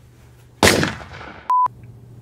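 A loud sudden crash about half a second in that dies away quickly, followed near the end by a short, steady electronic beep tone.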